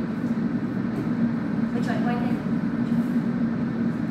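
Steady low hum throughout, with a voice speaking faintly and briefly about two seconds in.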